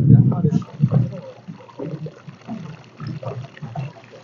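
Water lapping and sloshing against the hull of a small boat, in irregular low splashes.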